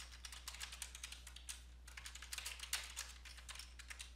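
Computer keyboard typing: quick, uneven keystrokes, faint, over a steady low hum.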